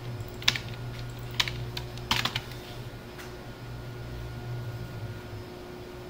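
Computer keyboard keystrokes: a handful of scattered key presses in the first three seconds or so. A steady low hum runs underneath.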